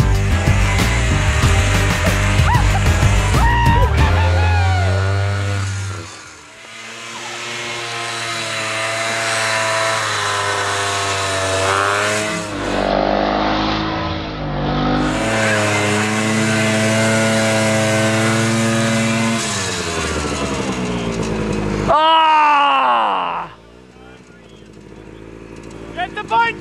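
Rock music for the first few seconds, then a snowmobile engine running hard in deep snow, its pitch rising and falling as the throttle works. Near the end the pitch drops sharply and the sound fades to a low level.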